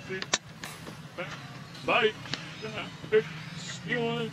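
A person's voice speaking a short phrase about halfway through, with a few sharp clicks between the words.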